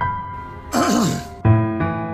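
Slow, sad piano music, a new note or chord struck at the start and again about a second and a half in. Between them comes a short breathy vocal sound with a wavering pitch, like a sigh.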